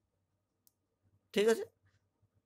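Near silence, broken by one faint tick about two-thirds of a second in and a brief spoken 'okay' a little after the middle.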